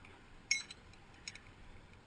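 Metal abseiling hardware clinking: a sharp clink with a brief ring about half a second in, then a couple of lighter clinks.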